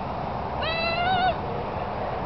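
A single high-pitched, drawn-out call, wavering slightly, held for under a second.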